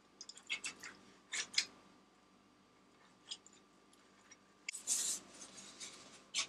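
Silicone pastry brush spreading melted butter over the bottom of a glass baking dish: a series of short, light brushing strokes, with a longer, louder swish near the end.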